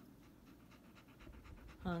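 A yellow Labrador retriever panting quickly and faintly, in an even run of short breaths.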